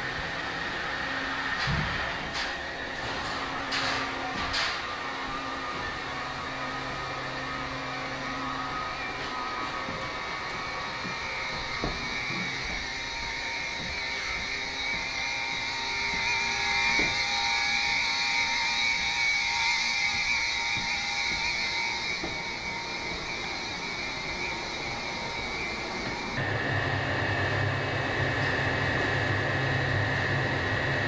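Steady hum and hiss of an aircraft carrier's ventilation and machinery in a steel passageway, with a few sharp clicks in the first seconds. Near the end a louder, deeper fan hum sets in.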